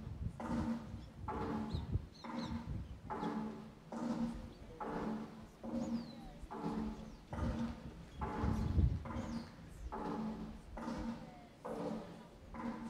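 A slow, steady rhythm of pitched beats, a little more than one a second, each beat carrying a held tone with a low thump beneath it.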